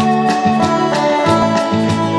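Acoustic guitars strumming a steady rhythm in the instrumental opening of a Korean folk-pop song, with a held melody line over them.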